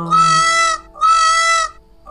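Indian peafowl (peacock) calling twice: two short, loud calls of steady pitch with a brief gap between them.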